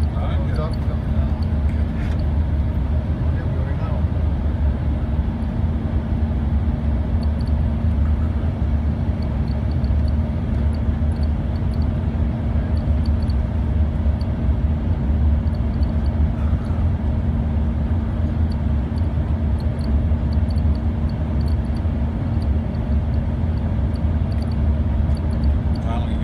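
Cabin noise inside an Embraer ERJ 145 regional jet on descent: a steady low rumble from its rear-mounted turbofan engines and the airflow, with a constant hum over it.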